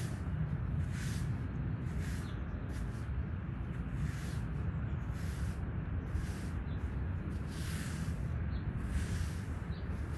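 Stiff plastic bristles of a turf rake brush sweeping across artificial grass in repeated swishing strokes, roughly one a second, over a steady low rumble.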